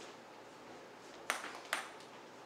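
Table tennis ball bouncing twice, two sharp ticks about half a second apart near the end.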